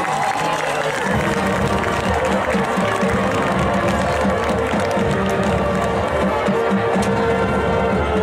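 High school marching band and front ensemble playing: a held chord over a repeating low pulse that begins about a second in.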